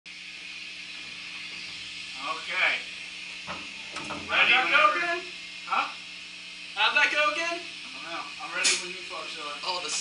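Short bursts of indistinct talk over a steady hiss and a low electrical hum.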